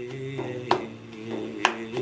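Hand drum struck by hand: two sharp slaps about a second apart, with a softer tap before the first, over a low held sung note.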